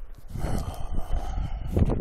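Wind buffeting a handheld phone's microphone: an uneven, gusting low rumble that swells about half a second in and peaks briefly near the end.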